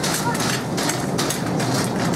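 Supermarket background noise while walking down an aisle: irregular scuffs and rattles over a steady hum, with indistinct voices.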